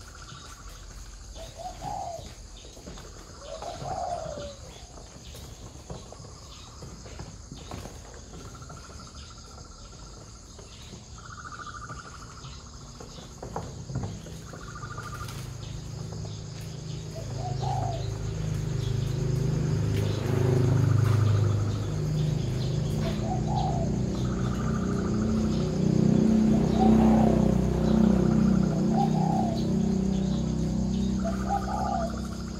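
Birds at a dove farm calling with short repeated calls, including the coos of spotted doves. From about halfway through, a louder low-pitched sound comes in underneath and lasts to the end.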